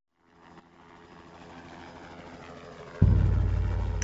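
A motor vehicle engine fades in from silence, its low hum slowly growing louder. About three seconds in, it cuts suddenly to a much louder, deep, steady engine rumble.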